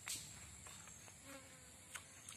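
Faint, steady high-pitched insect drone, with a sharp click just after the start and another near the end.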